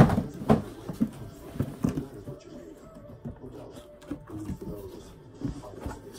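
Cardboard shoeboxes handled: a sharp knock as a box is pulled from a stack, then several lighter knocks and rustles over the next two seconds as it is brought out and held up.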